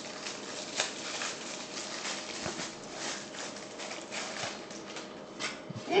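Faint handling noises of a small plastic camera in a child's hands: a few soft clicks and taps over a quiet room hiss, with a short laugh right at the end.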